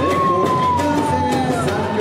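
Live samba music from a samba band with percussion, over which a single high tone swoops up at the start and then slowly slides down for nearly two seconds.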